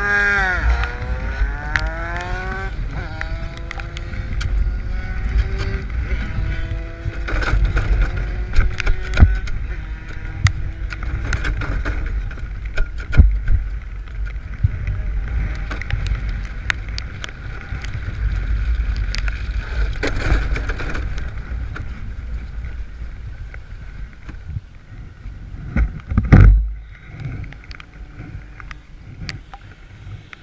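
Wind buffeting an onboard camera microphone, with knocks and rustles as the camera is handled. A pitched whine slides down over the first few seconds, and a loud thump comes near the end.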